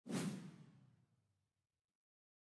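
Whoosh sound effect marking an on-screen graphic transition, starting abruptly and fading out over about a second and a half.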